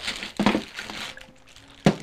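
Clear plastic zip-top bag crinkling as hands rummage through the small paint bottles and tubes inside it, with a sharp knock about half a second in and another near the end as a bottle is set down on the table.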